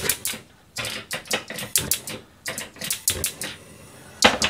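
Food frying in a covered frying pan on a gas burner, crackling and popping in quick, irregular clusters of clicks.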